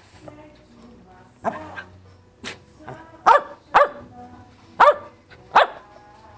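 A dog barking in short, sharp single barks, about six in all, the loudest four coming in the second half.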